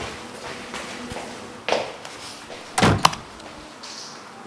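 A door being shut: a softer knock, then about a second later the loudest sound, a thud followed closely by a sharp click.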